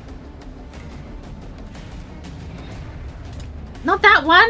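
Tense background score from the drama: a low, steady drone with faint scattered clicks and knocks.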